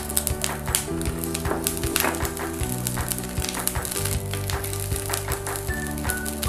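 Background music with held notes over a steady beat.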